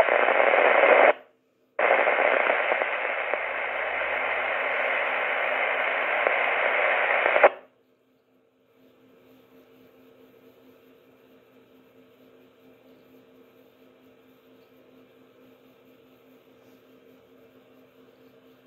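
FM static hissing from a Kenwood TS-480HX transceiver's speaker while it receives a weak, distant 10-metre FM repeater. There is a short burst of hiss, a brief break, then about six seconds of steady hiss that cuts off suddenly, leaving only a faint low hum.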